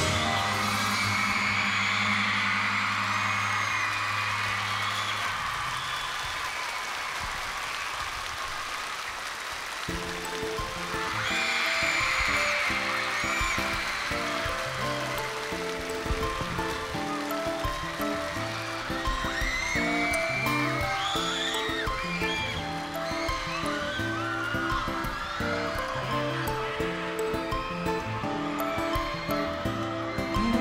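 Live K-pop stage audio: a song's last chord fades under a screaming, cheering concert crowd. About ten seconds in, the next song's instrumental intro begins with a steady beat of repeated notes, and crowd screams rise over it.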